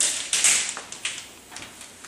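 Several short rustling, scraping handling noises, the loudest about half a second in.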